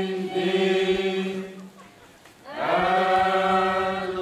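A group of voices chanting together in long held notes, dropping away about halfway through before the next phrase slides up and is held again.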